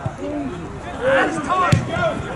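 Several voices shouting during open play on a football pitch, with one sharp thud of a football being kicked near the end.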